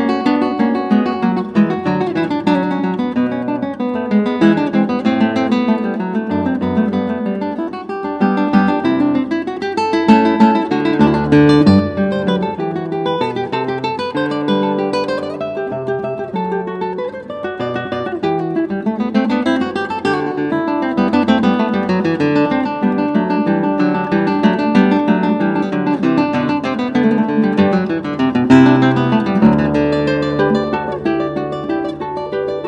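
Background music: an acoustic guitar playing quick plucked runs of notes that rise and fall, with strummed chords.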